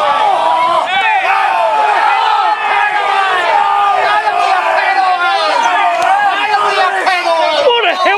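A football crowd's many voices shouting together, loud and without a break.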